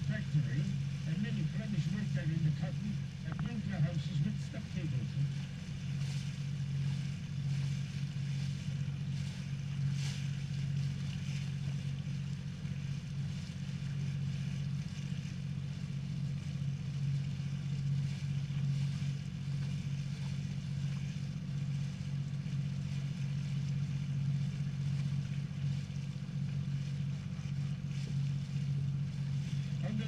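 Engine of a small canal tour boat running steadily under way, a constant low drone.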